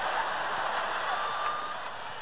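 Live audience laughing, a dense wash of crowd noise that slowly dies down.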